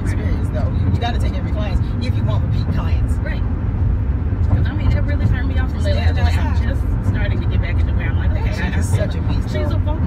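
Women's voices singing along inside a moving car, over a steady low rumble of road noise from the car.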